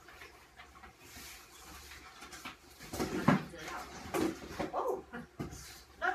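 A pet animal whining in several short cries in the second half, the loudest about three seconds in, over the rustle of cardboard boxes being unpacked.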